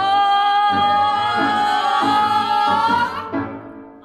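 A woman's voice singing one long, high held note over a soft low beat that repeats about every 0.7 seconds; the note fades out a little after three seconds in.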